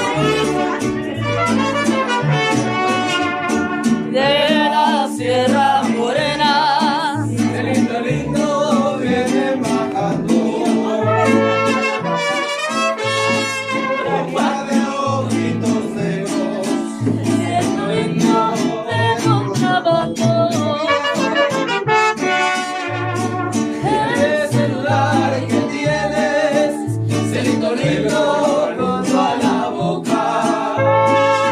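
Mariachi band playing live, with trumpets carrying the melody over a steady, bouncing bass line.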